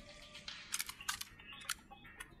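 A quick run of about five sharp, dry clicks, some in close pairs, over a faint background.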